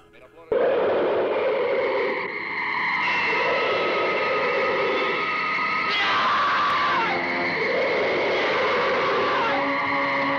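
Monster-movie soundtrack of a giant scorpion attack: the creature's shrill, wavering screech and men screaming over held notes, with a falling sweep about six seconds in.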